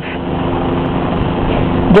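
A steady mechanical hum, like a motor running, over a constant background noise.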